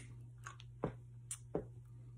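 A few faint clicks and small mouth noises as a clarinet is raised to the lips and fingered, the player settling onto the mouthpiece before playing.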